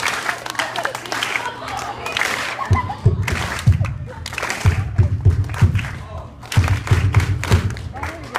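A backing beat for a rap starts about three seconds in, with heavy bass thumps in a repeating pattern, over audience chatter.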